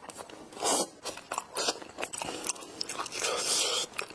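Close-miked biting and chewing of a soft bread roll filled with purple sticky rice and cheese: a run of short, irregular mouth sounds.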